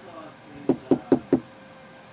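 Four quick knocks in a row, about a fifth of a second apart, a little past a third of the way in.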